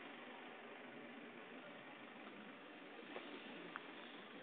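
Faint, steady running noise of a moving vehicle heard from inside it, with a couple of light clicks near the end.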